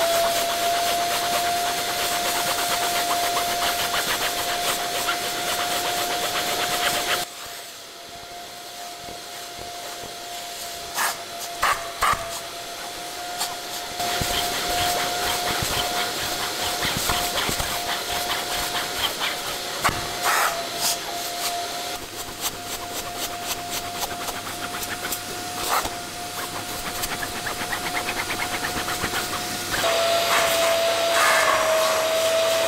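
Kärcher wet-and-dry vacuum cleaner running with a steady whine and hiss of suction as its nozzle is drawn over a car seat's fabric upholstery. The suction sound drops and is duller for several seconds after about seven seconds in, then comes back. A few light knocks of the nozzle come through.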